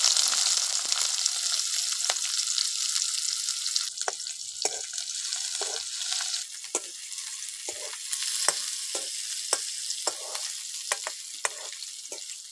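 Chopped onions sizzling in hot oil in a metal kadai, loud at first and then easing off. From about four seconds in, a steel ladle scrapes the pan in repeated stirring strokes, roughly one or two a second.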